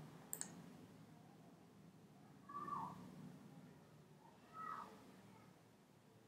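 Near silence: room tone, with a single computer mouse click just after the start. Two faint, short pitched sounds follow, a couple of seconds apart.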